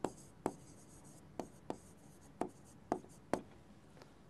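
Pen strokes on a touchscreen whiteboard: about eight short, irregular taps and ticks as a word is handwritten on the screen.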